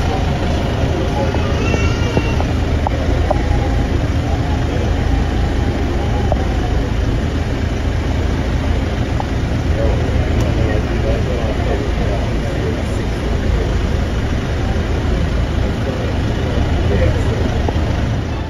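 Street ambience: a steady low rumble of an idling vehicle engine under indistinct voices of people talking.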